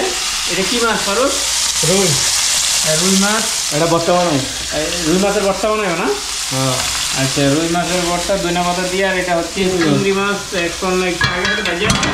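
Food sizzling as it fries in a wok on a gas stove, stirred with a metal spatula, with voices talking over it.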